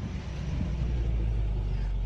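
A low, steady rumble that grows a little louder about half a second in.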